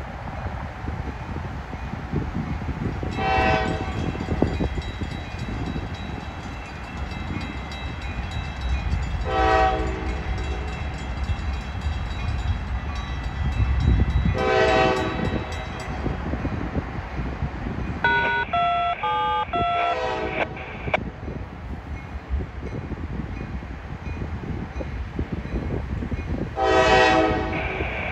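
Horn of an approaching GE AC44C6M-led freight train, sounded for a grade crossing: four separate chord blasts of about a second each, several seconds apart, over a low rumble. A short run of stepped, shifting tones comes from another source a little past the middle.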